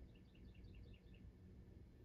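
Near silence: room tone, with a quick run of faint high chirps in the first second.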